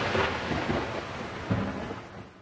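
Thunder sound effect: the rumbling, fading tail of a thunderclap, with a second smaller crack about one and a half seconds in.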